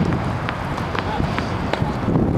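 A few sharp knocks of tennis balls being struck or bounced on outdoor hard courts, irregularly spaced about half a second apart, over a steady low rumble of wind on the microphone.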